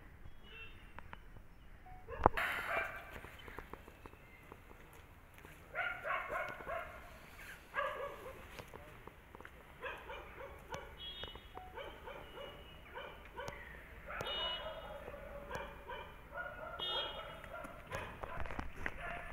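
A dog barking repeatedly in short calls, with one sharp knock about two seconds in.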